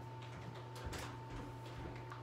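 Quiet room tone with a steady low hum and a faint tick about a second in.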